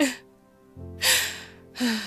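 A person's voice giving three short, breathy gasps, each falling in pitch, over soft background music with held notes.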